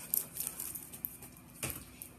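Ballpoint pen scribbled on paper in short, quick scratchy strokes to get a pen that won't write to start flowing ink, with one louder stroke or tap about one and a half seconds in.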